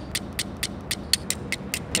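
A flint struck rapidly against a hand-held steel striker to throw sparks: a quick, even run of sharp, high clicks, about five a second.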